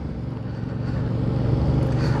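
Yamaha Tracer 7's CP2 parallel-twin engine running under way, its note growing gradually louder over the two seconds.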